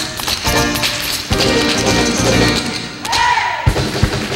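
Tap shoes striking portable tap boards in quick rhythmic taps, over live band stage music. A brief falling tone sounds about three seconds in.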